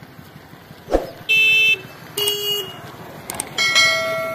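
Subscribe-button animation sound effects: a click about a second in, then two short electronic beeps, then a bell-like ding near the end that rings out and fades.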